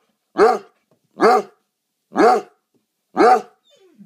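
Basset hound barking: four loud barks evenly spaced about a second apart, each rising and then falling in pitch. A brief faint falling whine follows near the end.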